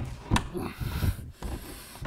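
Prehung wooden door and jamb bumping and rubbing against the framing as it is set into the opening, with one sharp knock about a third of a second in and a few softer knocks near the middle.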